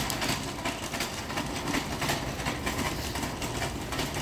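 Wire shopping cart rolling on a smooth concrete store floor: a steady rumble from the wheels with a light clatter of the basket.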